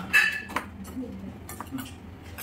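Small brass side-dish cups knocking and clinking against a brass serving plate as they are moved. The loudest strike comes near the start and rings briefly with a clear metallic tone, followed by a few lighter knocks.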